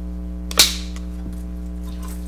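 Film slate clapped once: a single sharp crack about half a second in, over a steady low electrical hum.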